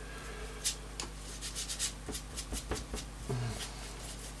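A glue brush scrubbing decoupage glue over torn paper on a board, a run of quick, short scratchy strokes.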